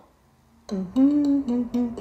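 A short tune of held notes stepping up and down in pitch, starting after a brief silence about two-thirds of a second in.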